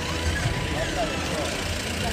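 Police SUV engine running at low speed, a steady low rumble, with the voices of a crowd of men talking around it.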